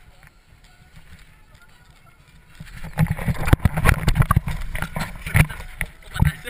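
Low, quiet rumble, then from about two and a half seconds in a loud, rapid run of knocks and thuds as the action camera mounted on the inflatable is jolted and tipped about.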